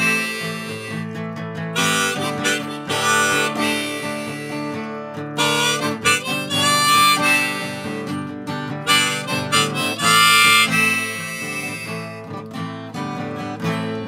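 Harmonica playing an instrumental break over an acoustic guitar, in loud phrases of bright held notes every couple of seconds, with the guitar going on underneath.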